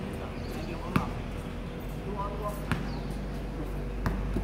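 Basketball bouncing on an outdoor hard court: a few separate sharp bounces, the loudest about a second in, another a little before three seconds, and one at the very end.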